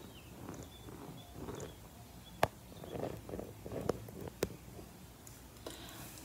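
Close-miked ASMR hand sounds: fingertips rubbing and pressing on the camera lens as if spreading makeup over the viewer's face. The soft, irregular rustling is broken by two sharp clicks about two seconds apart.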